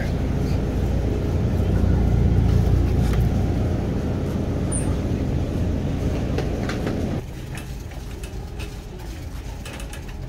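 Shopping cart rolling across a store floor, a steady low rumble with faint rattles, which drops off abruptly about seven seconds in.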